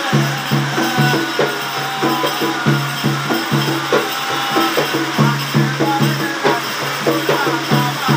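Sri Lankan ritual drumming: a hand-played cylindrical drum beats a steady, continuous rhythm, with the jingle of a metal hand rattle over it and a man's chanting voice.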